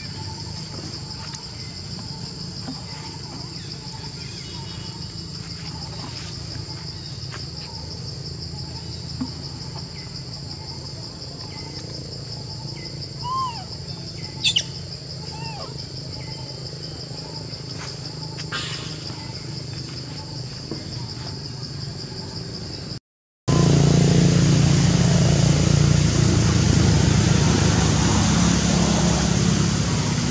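A steady high-pitched insect drone over a low background rumble, with a few short bird chirps about halfway through. Near the end it gives way abruptly to a louder broad noise with a deep rumble.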